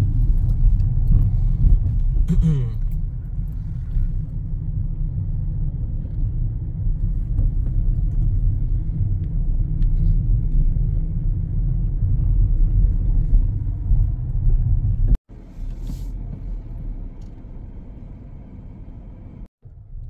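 Steady low rumble of a car driving, heard from inside the cabin. It cuts off abruptly about fifteen seconds in and resumes at a lower level.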